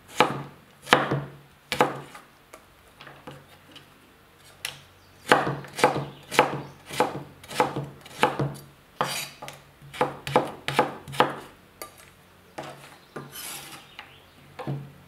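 Chef's knife cutting carrots into thin strips on a wooden cutting board: sharp strokes against the board, a few at first, then a steady run of about two cuts a second. Near the end comes a brief scrape as the cut strips are gathered on the board.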